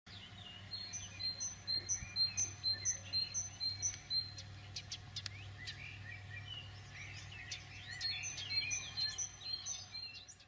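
Birds singing: one repeats a short, high two-note phrase about twice a second for the first few seconds and again near the end, with varied chirps from others in between. A steady low hum runs underneath.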